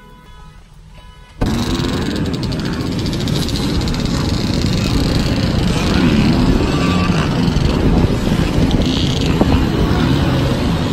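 Dirt bike engines revving on a motocross track, mixed with heavy rushing noise on the microphone, starting suddenly about a second and a half in and running loud from then on.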